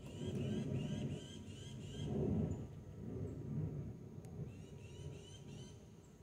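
A small bird chirping in two runs of short rising notes, about three a second, over a low, uneven rumble.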